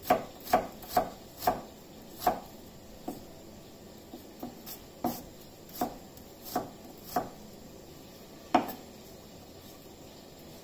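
Knife chopping food on a cutting board: about a dozen irregular strokes, a quick run of about two a second at the start, then slower and spaced out, with one last loud stroke near the end.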